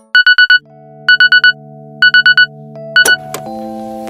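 Digital alarm beeping in groups of four quick high beeps, about one group a second, over soft sustained synth chords. The beeping stops about three seconds in and the background music carries on.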